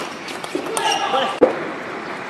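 Sharp clacks of a celluloid table tennis ball being hit: one at the start and a louder one about a second and a half in, with voices calling out in between as the rally ends.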